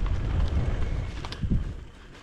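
Wind buffeting the microphone over the rumble of an eBike's tyres rolling on a dirt trail, dying down near the end.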